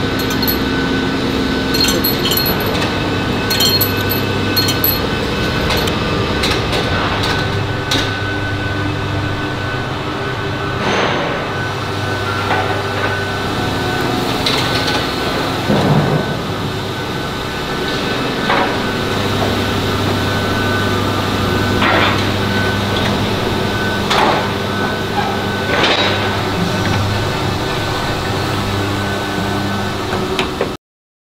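Steel-bar handling floor in a bearing factory: a steady machinery hum with a few held tones, and metal clanks and knocks every few seconds as round steel bars are handled.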